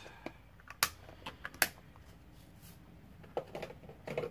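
A few sharp, light plastic clicks and taps from diamond-painting work: drills and the drill pen and tray being handled. The two loudest clicks come about one and one and a half seconds in, with a few softer ones later.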